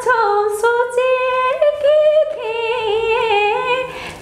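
A woman singing unaccompanied, in long held notes with a light vibrato.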